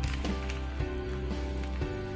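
Background music with sustained notes and a steady bass that shifts to a new note near the end, over scattered light clicks of dry potting soil being shaken out of a plastic nursery pot.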